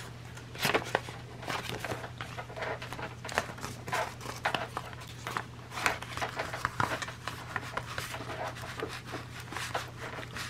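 Paper sheets being handled and slid into place against a metal hole punch: scattered light rustles and small taps, over a steady low hum.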